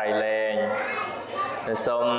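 A man's voice preaching in Khmer, with some syllables drawn out and held.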